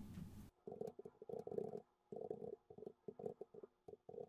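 Faint computer keyboard typing: runs of quick, irregular keystrokes in short bursts with brief pauses between them.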